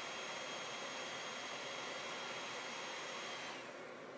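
Dell Latitude 7390 laptop cooling fan running as a steady airy hiss with a thin whine, then spinning down near the end as the laptop goes to sleep, the whine falling in pitch and the hiss dropping away. The fans run almost non-stop even under light use, which the owner complains of.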